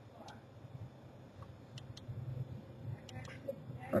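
Faint, scattered clicks of a computer mouse scroll wheel as a web page is scrolled, over a low steady hum.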